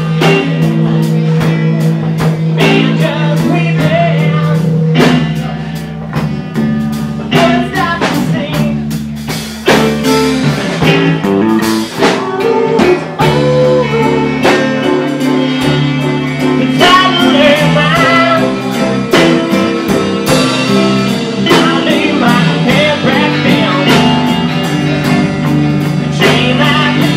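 A live band playing a blues-rock number: electric bass and electric guitar over a drum kit, with singing. The band drops quieter for a few seconds about six seconds in, then comes back up.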